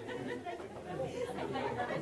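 Indistinct chatter of several people talking at once, their voices overlapping.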